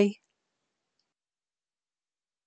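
The last syllable of a woman's spoken goodbye, cut off a moment in, then dead digital silence broken only by a single faint tick about a second in.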